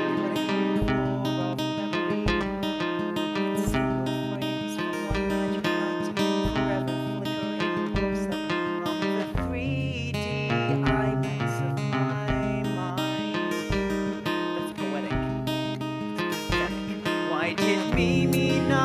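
Acoustic guitar strummed and picked over the pit band's accompaniment, with sustained chords and a steady low beat, heard through a player's in-ear monitor mix.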